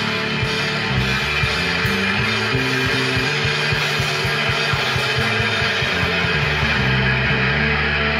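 Live rock band playing an instrumental passage without vocals: electric guitar, electric bass and drum kit, with a quick regular kick-drum beat under sustained bass notes.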